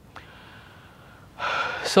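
A man drawing a quick, audible breath about one and a half seconds in, after a moment of faint room tone, leading straight into speech.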